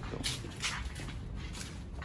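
Footsteps scuffing along a concrete floor at a walking pace, about two steps a second, over a low rumble.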